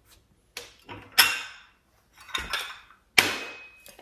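Fine china saucers clinking against other porcelain as they are set in place: a few sharp clinks, the loudest a little over a second in, and a sharp one near the end that rings briefly.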